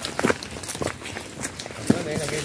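Footsteps walking on a dirt path, a quick series of soft crunching steps about three a second, with one louder step near the end.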